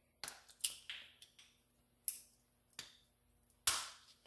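Sharp plastic clicks and snaps, about seven spread irregularly, the loudest near the end, as the tips are cut off a two-part epoxy syringe and it is handled.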